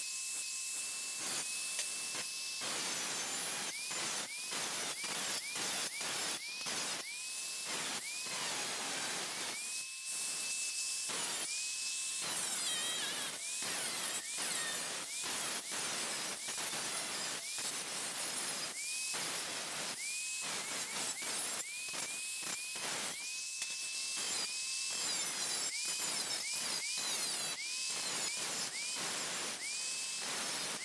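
An angle grinder's cutoff wheel is cutting a new sheet-steel floor pan, a steady hissing grind of abrasive on metal. Its high whine breaks off and climbs back up to speed many times, more often toward the end.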